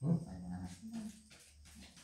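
A short whining vocal sound that falls in pitch at the start, followed by soft scattered clicks and taps of playing cards being handled.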